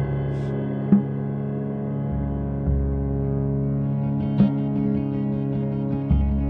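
Slow, ambient live band music: steady held low tones with a few sharp struck notes ringing out over them.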